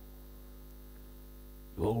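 Steady electrical mains hum: a constant low buzz made of several even, unchanging tones, with no other sound over it. A man's voice starts speaking near the end.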